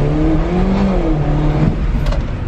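Car engine heard from inside the cabin as the car is driven slowly, its pitch rising over the first second, dipping, then climbing again before falling away near the end.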